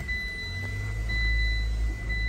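Mitsubishi Eclipse Cross's 1.5-litre turbocharged four-cylinder engine starting at the push of the start button, the low rumble swelling in the first half second and then settling into a steady idle, heard from inside the cabin.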